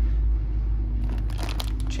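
Clear plastic parts bag crinkling as it is handled and turned over, starting about halfway in, over a steady low hum.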